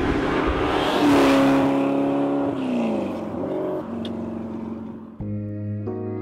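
A car engine at high revs, holding one pitch for about a second and a half, then falling in pitch and fading away, like a car passing by or easing off. Music with sustained guitar-like tones cuts in about five seconds in.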